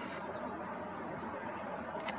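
Distant long passenger train hauled by an electric locomotive, running on the line: a steady, even rumble and hiss. A high thin tone stops just after the start.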